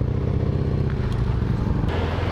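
Honda NSR 125's two-stroke single-cylinder engine idling steadily at low revs, heard from the rider's seat.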